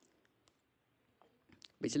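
A few faint, sharp clicks in a near-quiet pause, then a man starts speaking Hindi near the end.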